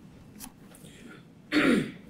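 A person clears their throat once with a short, loud rasp that falls in pitch, about one and a half seconds in. Before it there is only faint room tone with a small click.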